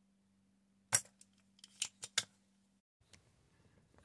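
A spring-loaded desoldering pump firing: one sharp snap about a second in, then a few fainter clicks, over a faint steady low hum. The pump is clearing solder from stepper-motor holes in a circuit board.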